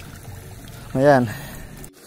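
Steady trickle of water running in a small ditch, with a short spoken exclamation about a second in. The sound drops out abruptly for a moment just before the end.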